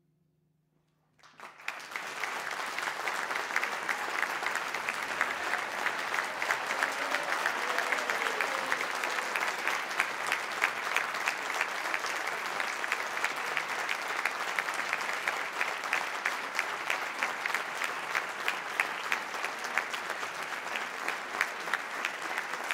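A second or so of near silence as the band's final note dies away, then an audience bursts into steady applause.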